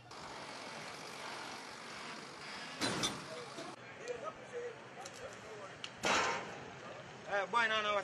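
Outdoor roadside traffic noise, a steady haze with two short louder bursts about three and six seconds in, and voices starting near the end.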